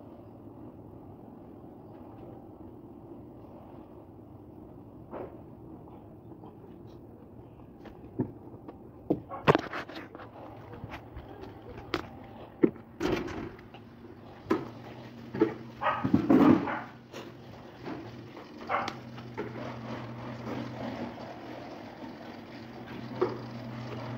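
Knocks and clattering of things being handled, a run of sharp knocks through the middle of the stretch, followed by a steady low hum.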